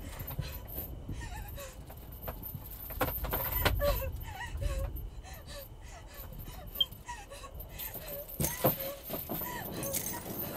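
A young woman whimpering and sobbing in short wavering cries over a low rumble, with scattered sharp clicks and a couple of louder knocks.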